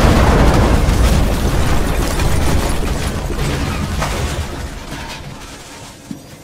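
Van explosion: a loud blast already under way that dies away slowly into a deep rumble over several seconds, with a few sharp crackles near the end.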